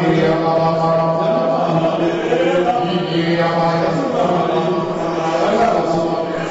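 A man's voice praying aloud through a microphone in a chant-like way, drawing out long held notes with short breaks between them.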